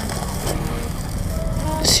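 Motor scooter idling with a low, steady rumble while stopped, under faint background music.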